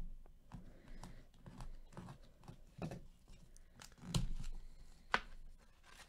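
A trading card pack's wrapper being handled and opened with gloved hands: faint scattered crinkles, rustles and light clicks, with one sharper click about five seconds in.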